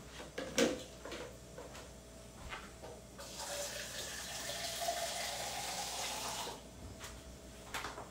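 Water tap running into a container for about three seconds, starting a little after three seconds in and stopping suddenly. A few short knocks come before it, the first and loudest under a second in.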